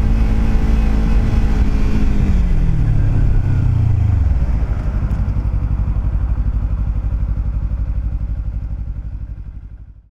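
Kawasaki Ninja 300 parallel-twin engine running, its pitch falling over the first few seconds as it slows, then settling into a low, even pulsing idle that fades out near the end.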